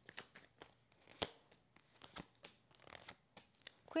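Tarot cards being shuffled and dealt out by hand: a quick, quiet run of card clicks and flicks, with one sharper snap a little over a second in.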